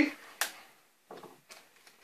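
Adhesive tape being torn off its roll: one short, sharp rip about half a second in, then a few faint crinkles as the strip is handled.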